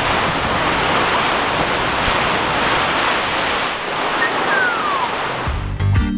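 Storm wind and rain on the fabric of a cotton canvas bell tent, heard from inside as a loud, steady rushing noise, with a brief falling whistle just before the end. Music with a heavy bass beat cuts in near the end.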